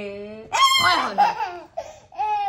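A toddler laughing in play: a loud, high squealing laugh starting about half a second in, after a shorter, lower laughing sound.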